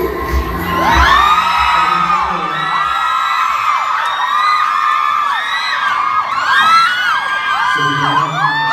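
Crowd of fans screaming and cheering in high voices, many calls rising and falling over one another, starting about a second in. Under it the song's backing music with a pounding bass carries on for the first couple of seconds, then stops.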